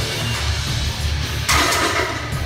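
Loud rock music with electric guitar playing throughout. About one and a half seconds in, a loaded barbell lands on the power rack's pins with a loud metal clank that rings briefly.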